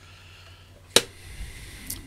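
A single sharp click about a second in, with faint rustling after it, as a plastic aquarium waterfall filter is handled.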